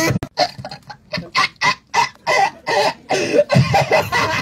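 A man's voice through a handheld microphone in rapid, staccato bursts, about three a second, like a frantic cackling laugh.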